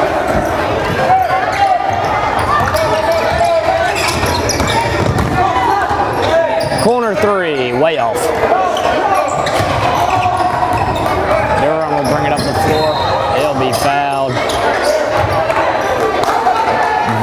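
A basketball bouncing on a hardwood gym floor during play, with shouting voices of players and spectators rising and falling over it, in an echoing hall.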